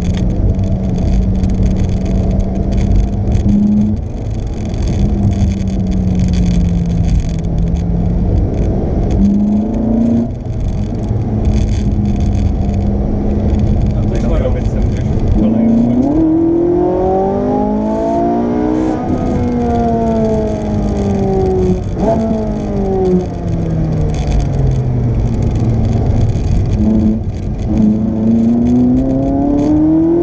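Ferrari 458's mid-mounted V8, heard from inside the cabin. It runs at a steady pitch for the first ten seconds or so, then rises sharply as the car accelerates, falls back as it comes off the power, and climbs again near the end. Road and wind noise are constant under it.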